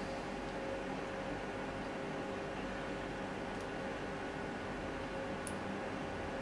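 Steady low hiss with a faint electrical hum, and two faint ticks in the second half.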